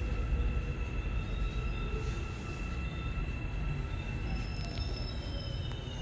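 Korail class 351000 electric train running on the Suin-Bundang Line, heard from inside the car: a steady low rumble with thin steady high tones over it, and a faint whine falling in pitch in the second half.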